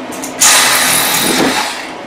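Milwaukee one-handed cordless reciprocating saw starting about half a second in and cutting through a wooden blank, freeing a CNC-routed piece whose cutout did not go all the way through. A steady, loud saw sound that fades a little near the end.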